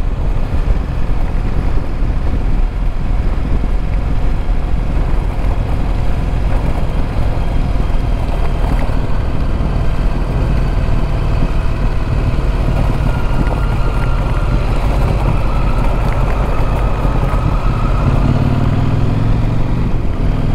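Adventure motorcycle riding along a gravel road, heard from the rider's onboard camera: a steady mix of engine, tyre noise on gravel and wind rush. A deeper low engine drone joins near the end.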